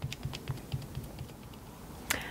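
Cosmetic wedge sponge dabbed up and down through a stencil film onto cardstock, stippling on acrylic paint: a quick run of soft taps, several a second, that thins out in the second half.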